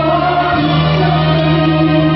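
Live concert band of woodwinds and brass playing long sustained chords, the low note changing about half a second in, with a male singer's held note over the band through a microphone.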